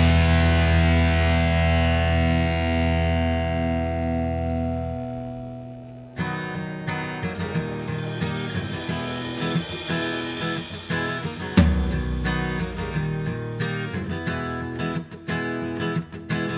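Rock instrumental passage: a held guitar and bass chord rings out and fades over about six seconds, then a guitar part of picked single notes comes in.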